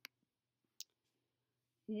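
Two short clicks about a second apart, the first sharper and fuller, the second thinner and higher, in an otherwise quiet room. A voice begins speaking near the end.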